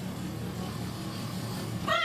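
An open-top car's engine running with a low, steady rumble as it rolls slowly along. Near the end, a woman's high, wavering whoop starts.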